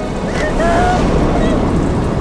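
A loud, steady rush of heavy rain with a deep rumble beneath it. A brief wavering cry sounds about half a second in.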